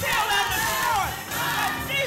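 Gospel choir and a lead singer on microphone singing and shouting loudly, the voices sliding up and down, over a steady low accompaniment note.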